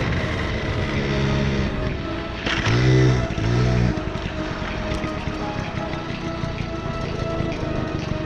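Background music over a 1978 Honda Express moped's small two-stroke engine running as it is ridden. A louder passage about three seconds in rises and falls in pitch twice.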